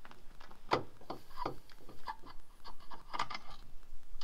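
Irregular clicks, knocks and rubbing of metal suspension parts as a coilover strut is worked into place on a VW T5 front hub during reassembly.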